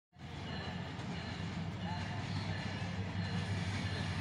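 Diesel locomotive of an approaching passenger train heard from a distance: a steady low engine rumble that slowly grows louder.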